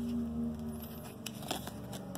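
2019 Panini Victory Lane trading cards sliding and flicking against each other as they are shuffled by hand, with a few faint clicks and rustles.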